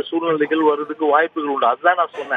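Only speech: a man speaking Tamil over a telephone line, the sound thin and cut off above the middle range.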